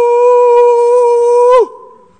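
A man's voice holding a long, loud "ooh" on one steady high pitch. It slides down and breaks off near the end.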